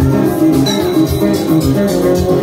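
DJ-played dance music over a club sound system, loud and steady, with a kick drum about twice a second, hi-hat ticks and a guitar and bass line.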